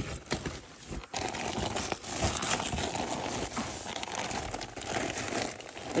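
Pink fiberglass insulation batt rustling and crinkling as it is handled and pushed up into the floor cavity between the joists.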